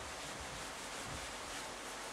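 Faint, steady rubbing of a cloth eraser wiping marker off a whiteboard.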